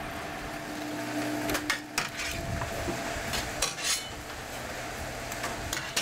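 Conveyor machinery running with a steady hum, with a few scattered sharp metallic clinks and knocks.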